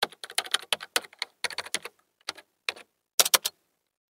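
Computer keyboard typing: an irregular run of key clicks for about three and a half seconds, ending with three quick, louder strokes.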